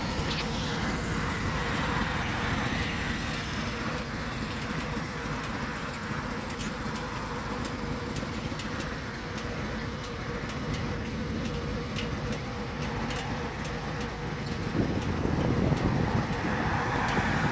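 Steady low rumble of idling V-twin touring motorcycles (Harley-Davidson Road Glides) mixed with road noise. It grows a little louder near the end as a vehicle approaches on the highway.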